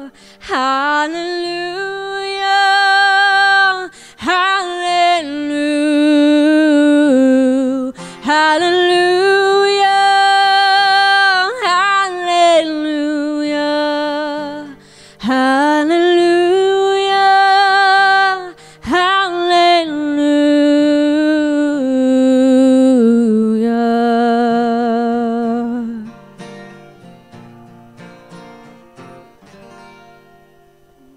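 A woman sings long held notes with vibrato to her own acoustic guitar, in several phrases. Near the end the singing stops and the guitar rings out quietly as the song ends.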